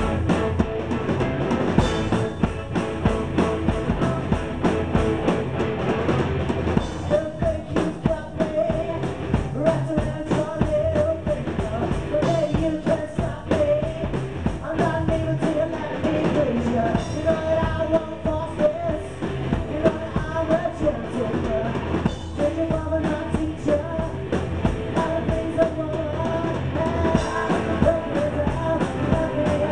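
Rock band playing live: electric guitars, bass guitar and drum kit together, with a wavering melody line coming in about seven seconds in.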